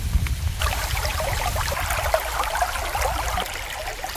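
Shallow stream trickling and burbling over stones, a steady run of small gurgles, with a low rumble under it in the first two seconds.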